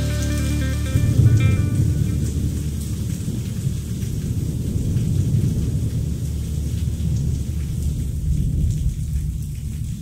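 Low rumbling thunder, a storm recording closing a rock song. It takes over about a second in as the band's last notes fade out.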